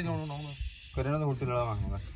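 A man's voice rattling off a quick run of 'na na na' refusals, breaking off for a moment in the middle, with a brief hiss behind it near the start.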